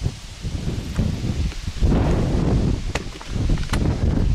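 Wind buffeting the microphone with rumbling handling noise, and two sharp clicks near the end, under a second apart.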